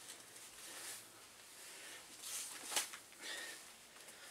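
Faint swish of clothing as a person moves and lifts a leg, with one short sharp tap about two-thirds of the way through.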